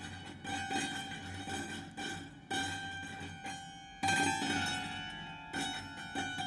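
Grand piano strings, prepared with green cords looped around them, sounding in a series of sudden attacks, each leaving a ringing, bell-like cluster of tones that slowly fades. The strongest attack comes about two-thirds of the way through.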